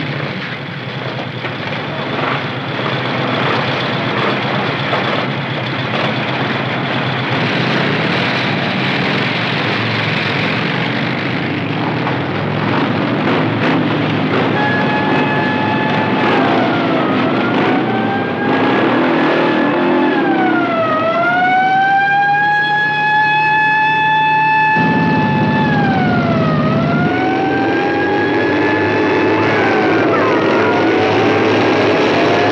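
Several motorcycle engines running together. About halfway through, a police car siren starts wailing over them, sliding down and back up in pitch and holding its high note in between.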